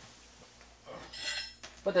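Brief light metallic clinking about a second in: the small steel inserts of a primer pocket swager knocking together as they are handled.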